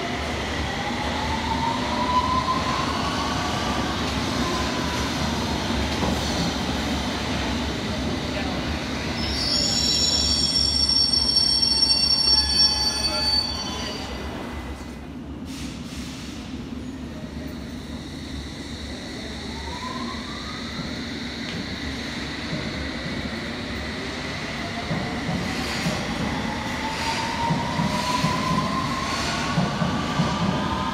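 London Underground S7 stock trains at a platform. A rising motor whine as a train pulls away, then a high-pitched metallic squeal of wheels for a few seconds about ten seconds in, the loudest part. Later, rising whines again as a train accelerates, the last one building toward the end over a steady rumble.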